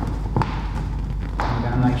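Vinyl boat wrap being handled at a utility-knife cut line: a soft rustle with a few light clicks, two about half a second apart at the start and one more just before a word is spoken.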